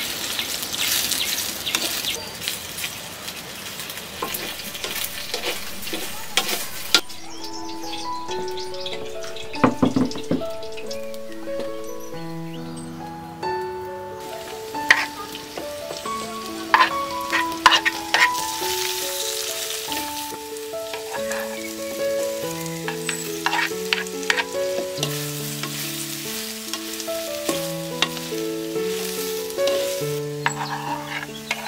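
Chicken sausage slices sizzling as they fry in a clay pot, stirred with a spoon. From about seven seconds in, a background-music melody of single notes plays over fainter sizzling, with a few sharp clatters from the stirring.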